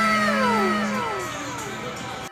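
An edited-in musical sound effect: several tones slide downward one after another over a held steady note, which stops about a second in, and the sound fades toward the end.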